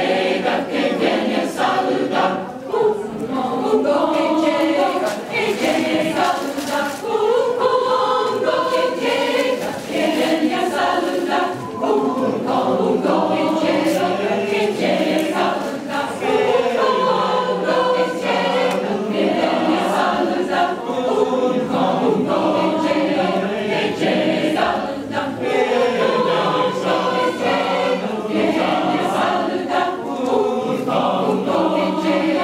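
Large mixed choir of men's and women's voices singing together.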